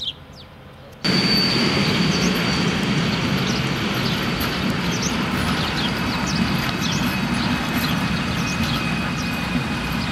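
A few faint bird chirps, then about a second in the sound jumps abruptly to a DB class 151 electric locomotive passing close by. It is a steady loud rumble of wheels on rail with a thin high whine over it.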